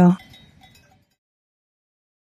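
Faint cowbells on grazing cattle ringing behind the tail of the narration and fading out about a second in.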